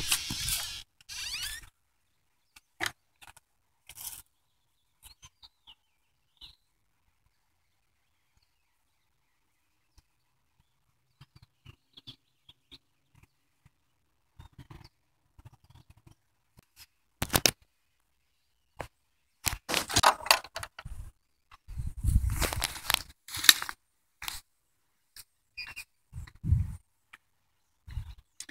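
Scattered short rustles, crunches and knocks from footsteps and brushing through dry grass and brush, between long near-quiet stretches, with a denser, louder run of them in the second half.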